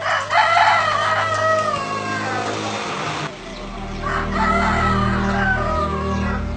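Rooster crowing twice. Each crow is a long call that falls in pitch toward its end; the first starts right away and the second about four seconds in.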